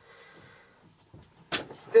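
Mostly quiet, then a single sharp click about one and a half seconds in as a mains plug is pushed into its socket.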